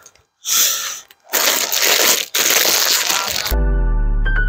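Loud crinkling and rustling of plastic being handled, in three bursts. Background music with steady held notes starts near the end.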